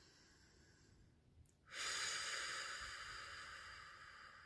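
A woman's deep meditative breath: a soft inhale, then a long breathy exhale that starts sharply just under two seconds in and slowly tapers off.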